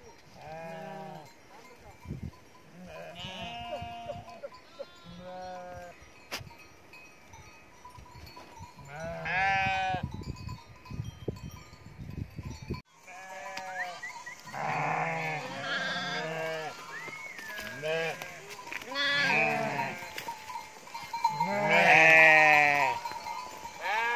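A flock of sheep bleating, many separate calls one after another and overlapping, more frequent and louder in the second half.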